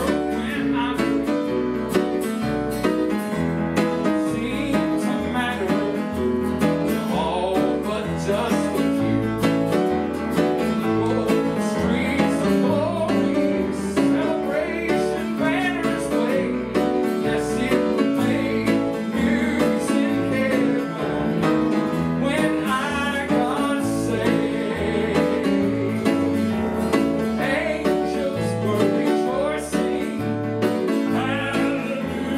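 Southern gospel song played live: grand piano chords and a moving bass line with guitar, under a male voice singing.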